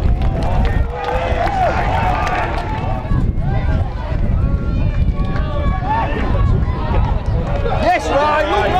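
Pitchside sound of an amateur football match: indistinct shouts from players and spectators over a steady low rumble.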